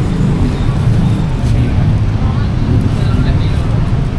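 Steady low rumble of street traffic, with faint voices in the background.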